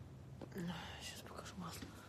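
A woman speaking softly, partly in a whisper.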